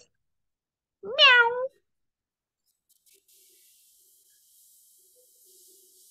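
A person imitating a cat: one drawn-out "meow" about a second in, sliding down in pitch.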